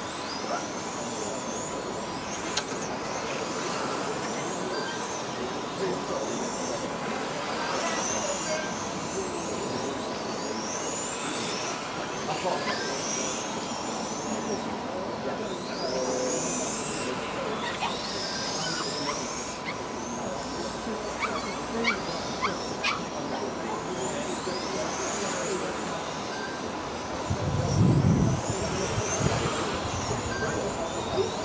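Electric 1/10-scale RC touring cars with 17.5-turn brushless motors racing on a tarmac circuit. Their motors whine in high-pitched sweeps that rise and fall as the cars accelerate and brake through the corners. A steady thin tone runs underneath, and a low rumble comes near the end.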